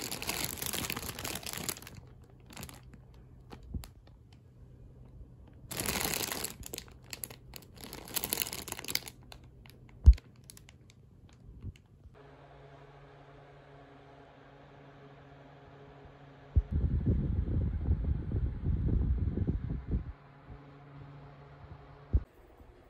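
Clear plastic wrapping around a quilted fabric mat crinkling as it is handled, in bursts at the start and again about six to nine seconds in. There is one sharp knock about ten seconds in, and a few seconds of heavier, lower rustling near the end.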